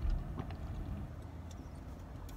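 A person drinking from a tilted aluminium can, with a soft knock at the start and a few faint clicks of swallowing. Under it runs a steady low rumble of a car cabin.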